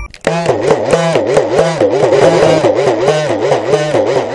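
Udukkai, the hourglass-shaped laced Tamil folk drum, starts about a quarter second in and is beaten in a fast, even rhythm of roughly six strokes a second. Its pitch bends up and down in a steady wave as the lacing is squeezed and released.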